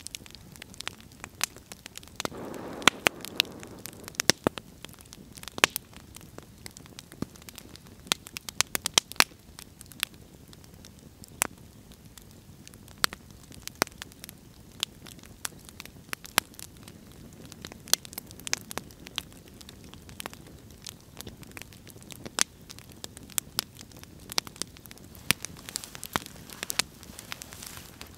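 Wood campfire crackling, with frequent sharp, irregular pops and snaps over a faint hiss of burning logs.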